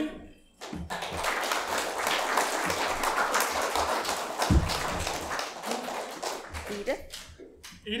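A congregation applauding a child, starting about a second in and dying away near the end. A single low thump comes about halfway through.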